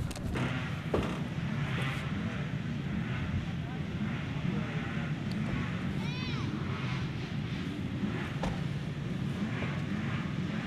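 A steady low engine drone, with faint voices in the background.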